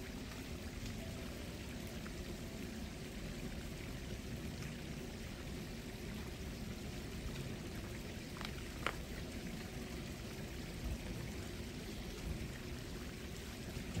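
Steady rush of running water, with two faint short ticks about eight and a half and nine seconds in.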